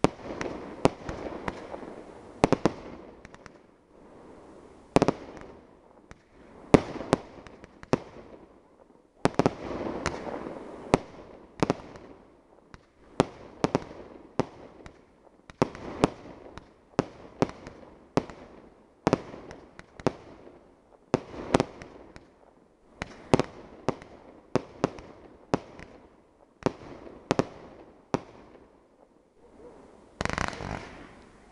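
Aerial fireworks shells launched one after another, each bursting with a sharp bang, about one a second and sometimes two in quick succession.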